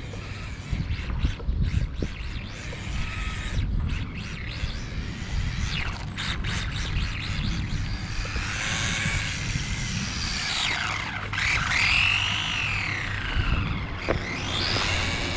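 Carisma GT24 Hyundai i20 RC rally car's electric motor and drivetrain whining, the pitch rising and falling in arcs as the car speeds up and slows, loudest in the second half, over a steady low rumble.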